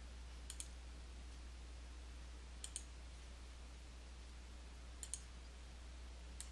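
Three faint computer mouse clicks about two seconds apart, each a quick double tick of button press and release, over a low steady hum.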